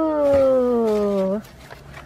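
A woman's long drawn-out "ooh" of delight, sliding slowly down in pitch and cutting off about a second and a half in, followed by a faint steady hum.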